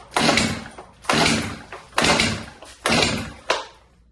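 Stihl MS 291 chainsaw's recoil starter cord being yanked five times in quick succession, about once a second, each pull cranking the engine without it firing. The saw is short of gasoline.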